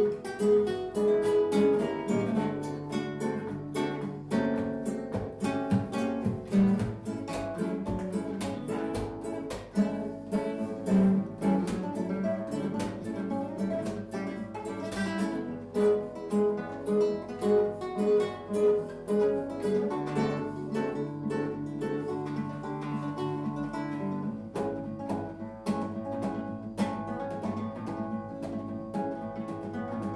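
Background music on acoustic guitar, a quick run of plucked and strummed notes.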